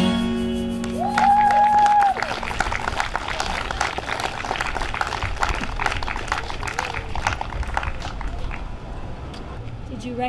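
A final strummed acoustic guitar chord rings out and fades over the first few seconds, while a crowd starts applauding about a second in and keeps clapping. A voice briefly holds a high note near the start of the applause.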